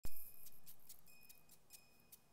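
A sharp struck sound at the very start that fades over about a second, with light, even ticking at about four to five ticks a second.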